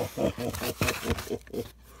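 A man laughing with delight in a quick run of short, breathy pulses, about six a second, that stops near the end.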